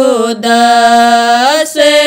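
A woman singing a Rajasthani folk bhajan solo, drawing out one syllable as a long held note that dips at first, holds steady for about a second, then slides up before a short break and the next note.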